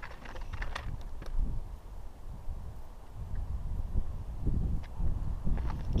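Wind buffeting the microphone as a low, uneven rumble, with a few faint clicks and scrapes scattered through it.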